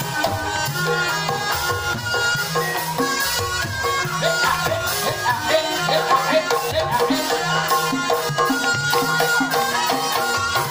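Live Banyumasan gamelan music for an ebeg dance: kendang drum strokes over ringing gong-chime notes, playing a steady, busy rhythm.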